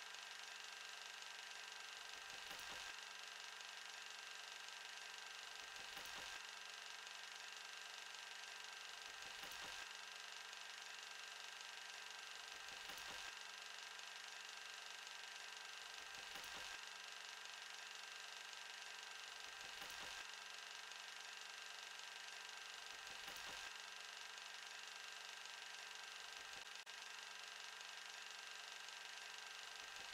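Very faint steady hum and hiss, with a soft pulse recurring about every three and a half seconds.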